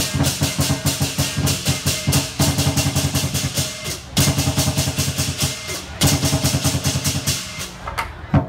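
Lion dance percussion: a large drum beaten in fast, dense strokes with cymbals clashing along, broken briefly about four seconds in and again about six seconds in.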